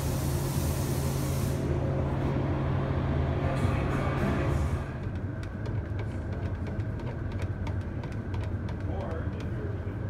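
Spray gun hissing with compressed air for the first second and a half, over a steady low hum. From about five seconds in come a series of light clicks and knocks as a metal paint can is opened and its paint stirred.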